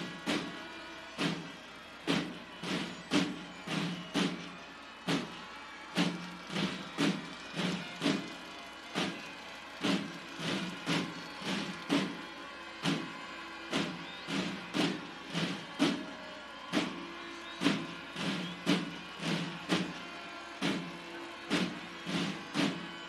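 Military drum corps (banda de guerra) beating a march for the flag escort: sharp drum strokes at about two a second with steady low tones sounding beneath them.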